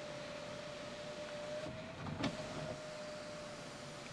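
Power panoramic sunroof of a 2022 Hyundai Tucson closing, its motor drawing the glass panel and sun shade shut together. It is a faint, steady whine with a single click about two seconds in.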